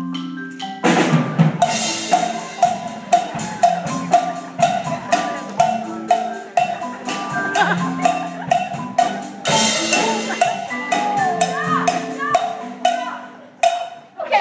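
Percussion ensemble playing: marimbas hold low notes while a drum kit comes in about a second in, and a cowbell is struck on a steady beat, about two to three strikes a second, over the top.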